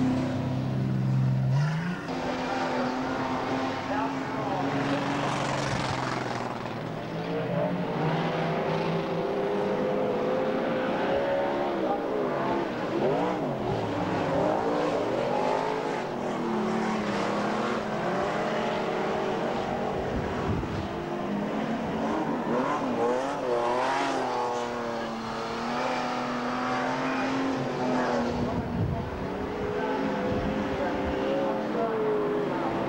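Several stockcar engines racing around a dirt oval. Their pitch keeps rising and falling as the cars accelerate and lift around the track.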